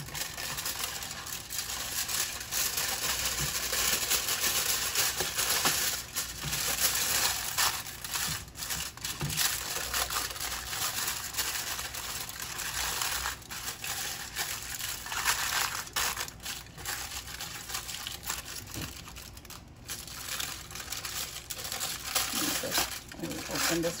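Aluminium foil being folded and crimped by hand, crinkling in irregular spells with short pauses.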